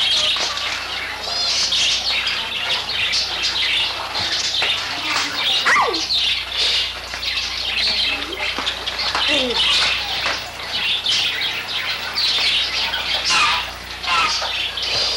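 Kittens mewing over and over in short, high-pitched cries, with a couple of longer calls that fall in pitch.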